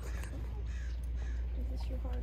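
Steady low wind rumble on the microphone, with a few faint short calls in the background.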